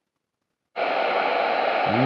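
Capello NOAA weather radio silent for about three-quarters of a second, then steady static hiss from its speaker: no station is received on 162.400 MHz, weather channel one.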